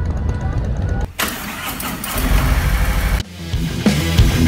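Harley-Davidson V-twin motorcycle engines running at idle. About a second in this gives way to a louder, rougher engine noise, which cuts off suddenly near the end as rock music begins.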